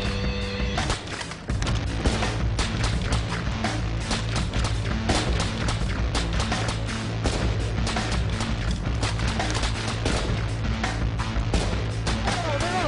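Dramatic music with a low, steady beat comes in about a second and a half in, laid over many rapid, irregular gunshots from a live-fire police tactical drill.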